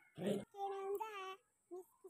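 A young child's voice sings or draws out two held notes in a row after a brief noisy burst, then breaks off into short vocal sounds near the end.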